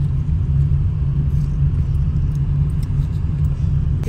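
Steady low rumble of a car's engine and tyres on the road, heard from inside the cabin while the car is driven.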